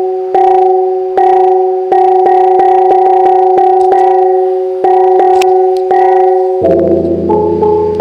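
A Mường bronze gong ensemble (chiêng) played in a slow steady pulse: gongs of several pitches struck in turn, each note ringing on over the others. A little under seven seconds in, a fuller accompaniment with a low bass line comes in under the gongs.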